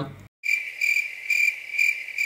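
Cricket chirping sound effect cut in after a moment of dead silence: a steady high chirp pulsing about twice a second. It is the comedy editing gag for an awkward silence after a line.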